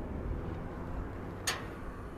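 Compressed natural gas dispenser being switched on: a single sharp click about one and a half seconds in, over a low steady rumble, as the dispenser starts up to fill the vehicle.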